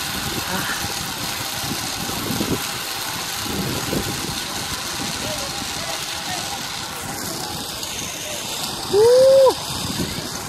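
Steady rushing wind and rumble on the microphone during a sky-cycle ride along a high steel cable. Near the end comes one brief, loud tone that rises and then falls.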